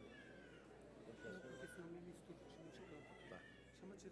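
Near silence: three faint, high-pitched voice-like calls that slide in pitch, over a faint low murmur.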